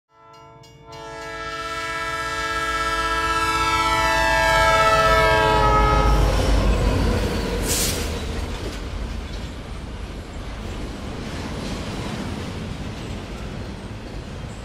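Train horn sounding a multi-note chord that swells for about five seconds and dips in pitch as it passes, then the rumble of the train going by, with a brief hiss about eight seconds in.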